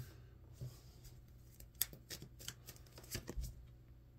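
Tarot cards being handled and drawn from the deck: faint card slides with a handful of sharp snaps.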